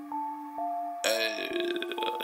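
A hip hop beat's sparse melody of held electronic notes, with no rapping. About a second in, a loud burp cuts in over the music: it starts sharply, falls in pitch and breaks into a rapid rattle, lasting about a second.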